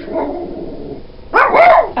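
A small pet dog barking a quick double bark about one and a half seconds in, an alert bark at dogs seen outside the window.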